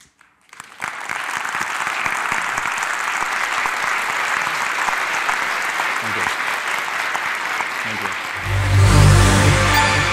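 Audience applauding, starting about a second in. Music with a deep bass comes in near the end.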